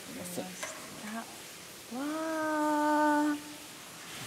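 A single drawn-out vocal sound, one held vowel-like tone of about a second and a half, starting about halfway through, over a steady hiss of aerated water in the fish-rearing tanks.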